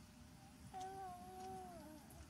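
A faint, drawn-out voice-like call lasting about a second, holding one pitch and dipping at the end.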